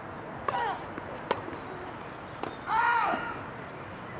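Tennis ball struck by rackets on a grass court: two sharp hits over a second apart. A short cry comes just before the first hit, and a louder, longer voiced call follows right after the second.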